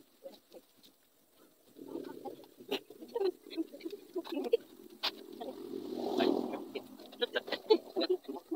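Scattered sharp clicks and wet scraping as knives and hands work a goat carcass in a steel basin, over a low background sound that swells about six seconds in.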